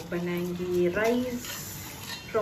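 A person's voice with long held pitches, loudest in the first second and a half.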